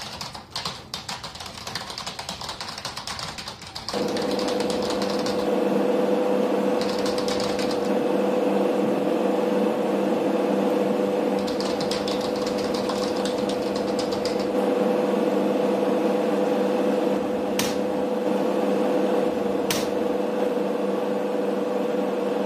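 Rapid computer-keyboard typing clicks. About four seconds in, a louder, steady machine-like hum with fast clatter joins in and runs on. Two sharp clicks sound near the end.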